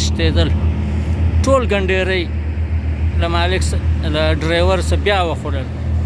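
A man's voice singing in drawn-out, wavering phrases over a steady low engine drone.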